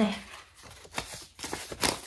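Paper euro banknotes being handled and flicked through by hand: several short, crisp paper rustles, the loudest near the end.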